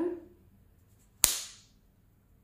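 A powdered latex surgical glove snapping once, sharply, about a second in, as the stretched latex pinched at the fingers is let go.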